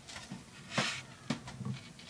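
Faint handling noise as a skateboard deck is turned over in the hands: a short soft rush of noise a little under a second in, then a few light taps and clicks.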